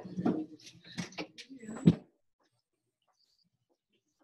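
Indistinct low voice sounds and knocks, ending in one loud sharp thump about two seconds in. Then the audio cuts out abruptly to complete silence.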